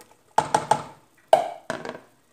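A plastic container knocked against the rim of a stainless steel cooking pot to shake out the last beans: three quick taps, then two louder knocks with a short ring.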